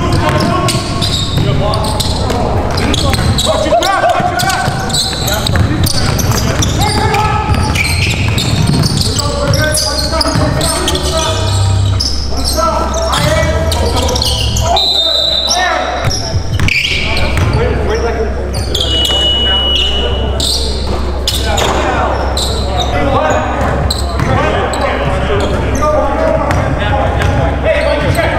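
Basketball game sound in a large gym: a ball bouncing on the hardwood floor amid players' voices, with a steady high tone lasting a second or so about three quarters of the way through.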